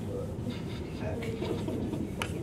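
Quiet background talk of several people in a room over a low steady hum, with no one voice in front.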